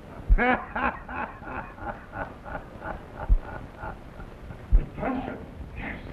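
A man laughing in a long run of short 'ha' bursts, loudest at first and tailing off after about four seconds, with a few dull low thumps.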